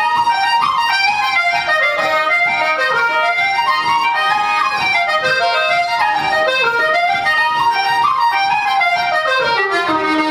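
Irish traditional jig played live by flute, fiddle and button accordion together, in quick running phrases that rise and fall. The accordion stands out most.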